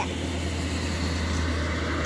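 Steady low rumble with a hiss, the sound of a motor vehicle running nearby, holding an even level.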